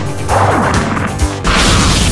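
Two crashing impact sound effects, about a second apart, over steady background music.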